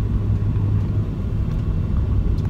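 Car engine running, heard from inside the cabin as a steady low rumble with a hum.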